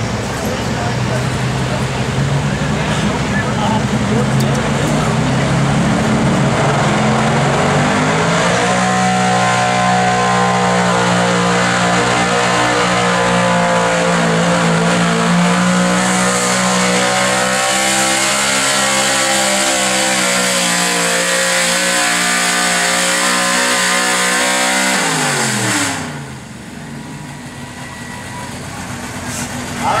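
Square-body Chevrolet pickup's engine pulling a weight-transfer sled in a stock truck pull. The revs climb over the first several seconds and hold high under load, a hiss joins about halfway through, and near the end the pitch falls sharply and the sound drops as the throttle is let off at the end of the pull.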